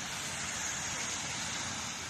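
Steady hiss of street ambience on a wet, rainy city street, with no distinct event standing out.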